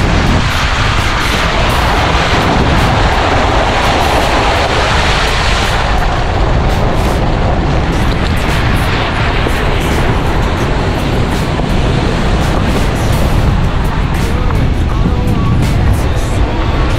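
Adventure motorcycle riding: engine running under heavy, steady wind rush on the microphone.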